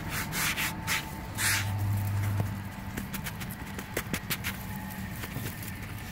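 Hand rubbing powdered dust across the face of a stone headstone: a few brushing strokes in the first second and a half, then scattered light clicks. A low hum sounds for about a second around the two-second mark.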